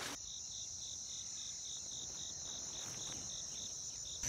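Insects calling: a steady high-pitched trill with a pulsing chirp beating about four times a second, cutting in abruptly just after the start.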